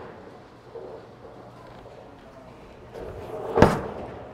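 Bowling ball landing on the lane at release: one sharp, loud thud about three and a half seconds in, after a stretch of faint bowling-alley background.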